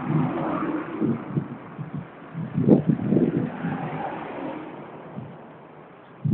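A motor vehicle engine, rising to its loudest a little before halfway and then fading away, heard through uneven low rumbling.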